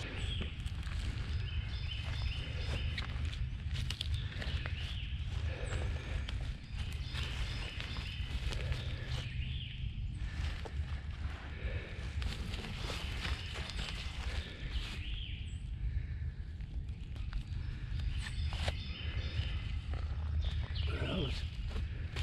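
Footsteps and rustling in dry leaf litter and brush, with scattered crunches and handling noises as a downed wild turkey is reached and moved, over a steady low rumble.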